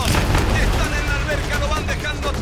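A sudden splash as an athlete dives head-first into a shallow pool, fading over about half a second, with voices shouting over it.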